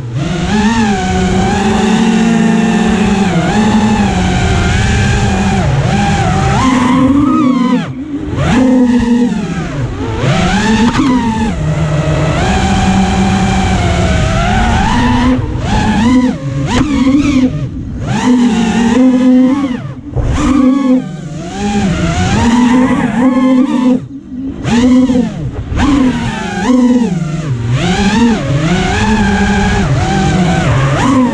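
Loki X5 quadcopter's electric motors and propellers whining close to the onboard camera, the pitch rising and falling constantly with the throttle. There are several brief dips where the throttle is pulled back.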